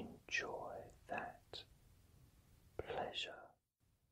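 A man whispering two short phrases, the second after a pause of about a second; the sound then cuts off to dead silence shortly before the end.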